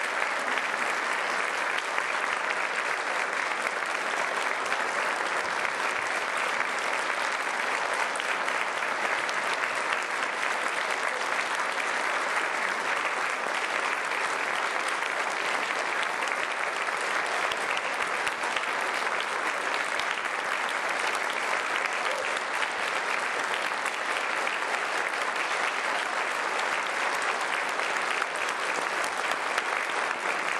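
Concert audience applauding steadily after a choral performance.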